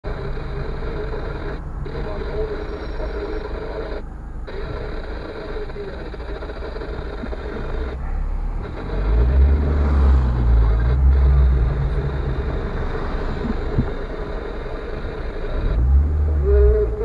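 Car engine heard from inside the cabin while creeping in slow traffic. A low rumble swells for a few seconds around the middle as the car moves up. An indistinct voice plays underneath.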